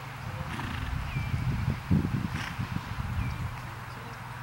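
Horse trotting in a sand dressage arena: an uneven low rumble of hoofbeats and breathing that swells, is loudest about two seconds in, then fades.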